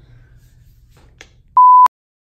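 A single loud, steady electronic beep, one pure tone about a third of a second long near the end, starting and stopping abruptly; before it only a faint low hum.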